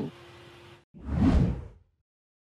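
A whoosh sound effect that swells and fades over about a second, the kind of transition sting that marks a cut between news stories. It follows a moment of faint steady hum with a thin low tone.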